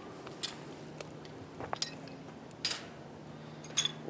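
Scattered light metallic clinks and rattles of hardware cloth and wire mesh being handled and pushed against a rebar armature: a handful of separate short clicks, the loudest about two-thirds of the way in.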